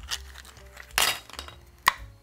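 Small hard kitchen items being handled: a short rushing noise about halfway through, then a single sharp clink with a brief ring near the end.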